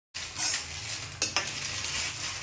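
Steel ladle stirring a simmering curry in a steel pan, over a steady sizzling hiss. The ladle clinks twice against the pan a little over a second in.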